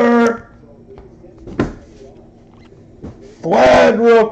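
A man's brief wordless voice sounds, at the start and again near the end, with a single sharp tap about one and a half seconds in.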